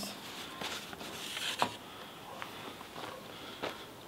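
Quiet handling of packers being slid out from under a PVC pipe: a brief rustling scrape and one sharp click about one and a half seconds in, then a couple of faint ticks.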